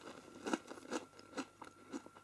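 Chewing a mouthful of crunchy breadstick coated in chocolate dip: a run of soft, irregular crunches.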